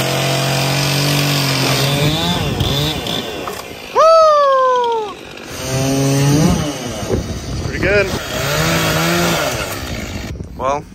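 Gas chainsaws running under load while cutting notches into hewn logs. The engine pitch rises and falls with the throttle, with a loud sharp rev about four seconds in that sinks back over a second.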